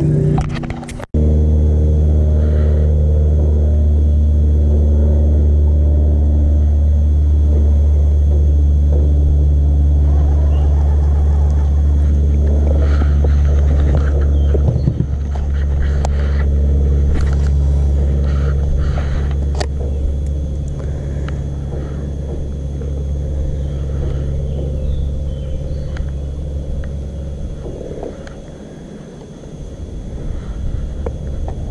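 Steady low hum of a bow-mounted electric trolling motor pushing a bass boat, with a few light clicks and rattles in the middle; the hum drops in level about halfway and fades away near the end.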